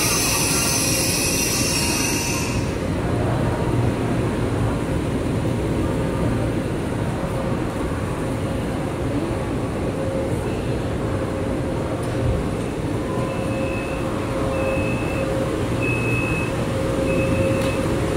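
CRH high-speed train at a station platform: a loud high hiss cuts off about three seconds in, leaving a steady low rumble with a faint hum. Near the end, four short high beeps sound at even spacing.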